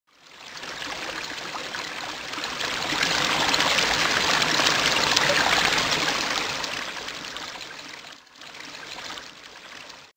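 Rushing-water sound effect, like a running stream, swelling up to a peak midway and then fading away, with a brief drop-out near the end.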